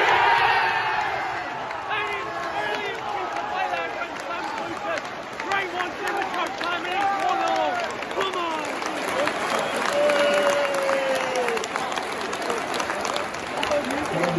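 Football crowd celebrating a goal: many fans cheering and yelling at once, with clapping, loudest at the start.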